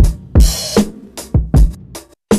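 Hip-hop drum break loop at 75 bpm, kick and snare hits, playing back through a Black Box Analog Design HG-2 tube processor with its input gain being pushed up, driving the tube into overload so the drums take on saturated colour.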